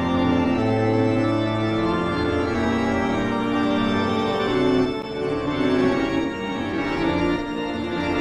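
Organ music: slow, held chords that shift every second or so, with a brief drop in level about five seconds in.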